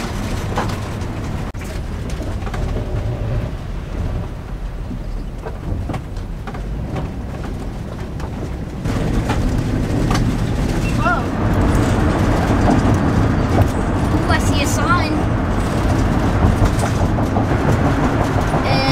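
Motorhome driving, heard from inside: a steady low rumble of engine and road noise that steps up louder about halfway through, with a few brief snatches of voices.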